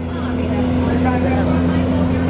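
Steady low engine hum from parking-lot tram trains standing nearby, with faint voices mixed in.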